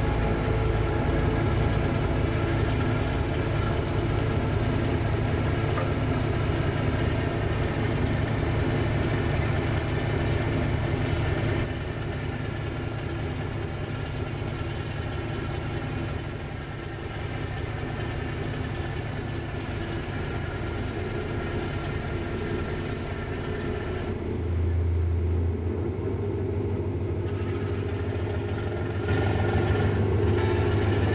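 Diesel engine of a small coastal sand freighter running steadily as the ship gets under way. The sound gets quieter about twelve seconds in and louder again in two steps near the end.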